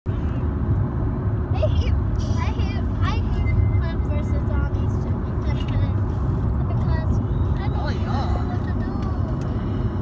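Steady low road rumble inside a moving car's cabin, with faint voices over it.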